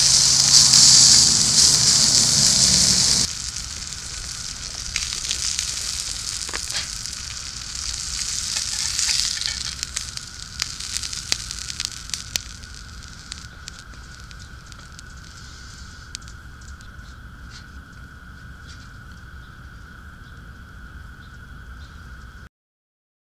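Smashed bratwurst patty sizzling loudly in a hot cast iron pan for about the first three seconds, then cut off sharply. After that comes a fainter sizzle and crackle from the hot pan, with scattered clicks of metal utensils, and it dies down over the last several seconds.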